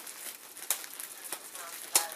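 Clear plastic bag crinkling and crackling as hands pull at it to get it open, with two sharp crackles, the louder one near the end.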